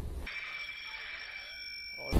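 A steady, high-pitched electronic buzzer tone, starting a moment in and held on one pitch for nearly two seconds.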